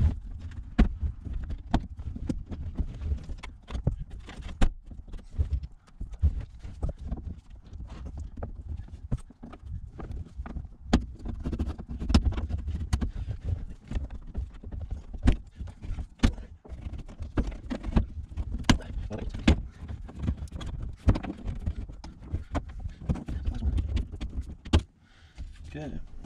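Irregular clicks, knocks and rattles of a particle-board interior panel being pried off a 1982 VW Vanagon's sliding door, its clips popping out, over a low rumble of handling.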